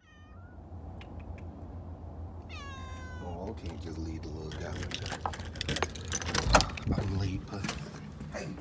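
Two high, falling cries from a household pet: a brief one at the start and a longer one about two and a half seconds in. They are followed by a short bit of voice and then a run of clicks and knocks as a door is handled, the loudest knock near the end.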